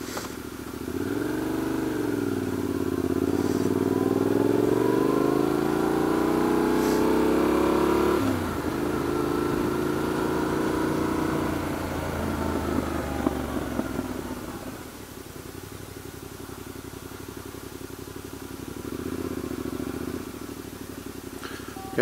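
Adventure motorcycle engine heard on board: it pulls up in pitch for several seconds, drops off sharply about eight seconds in, then winds down as the bike slows almost to a stop, running low and steady near the end.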